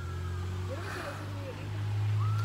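Low steady rumble of a nearby motor vehicle engine, growing louder near the end.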